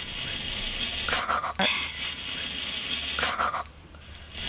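Fingers brushing and flipping the sequins of a reversible sequin pillow close to a microphone: a steady, scratchy rustle, with two short louder bursts about a second in and near the end.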